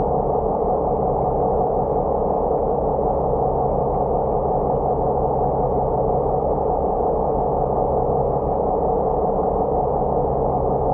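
Steady, muffled engine drone heard underwater beside a boat's hull, even in level throughout, with no strikes or breaks.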